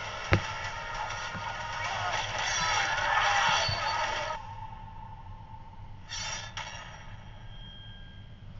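Film trailer soundtrack: a thump just after the start, then music and effects swelling for about four seconds before cutting off suddenly, with a faint lingering tone and a short burst of noise about six seconds in.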